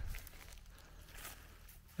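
Quiet: faint, steady background hiss with no distinct sound event.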